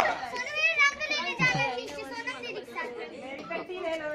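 Children's voices shouting and calling out excitedly over one another while they play.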